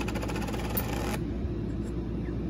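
A Presidential dollar coin rattling as it settles in a compartment of a plastic sorting box: a quick run of small, evenly spaced clicks that stops suddenly about a second in. A low steady hum runs underneath.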